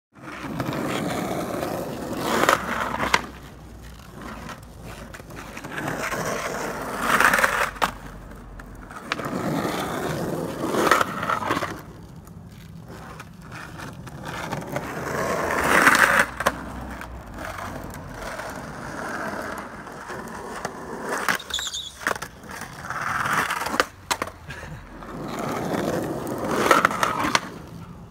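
Skateboard wheels rolling on asphalt in repeated passes, swelling and fading every few seconds, with sharp clacks of the board and trucks hitting the curb during slappy curb grinds.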